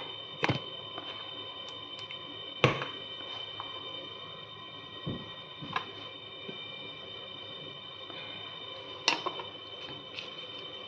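Scattered handling noises at a kitchen counter: about five short knocks and clicks, the loudest near three seconds in, as a squeeze bottle of mayonnaise and other items are handled and set down. Underneath runs a steady faint high-pitched whine.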